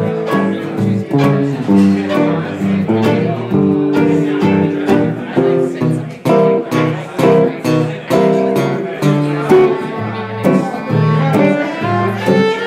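Gypsy jazz in D minor on two acoustic guitars and violin: quick picked guitar melody over steady strummed rhythm guitar, with the violin also heard.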